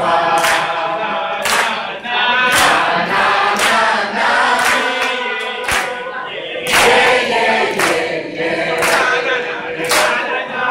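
A crowd of people singing together with steady hand claps about once a second.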